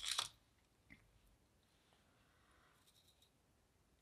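A brief rustle and tap at the start as a small plastic spatula is put down on wax paper, then one faint click about a second in; otherwise near silence.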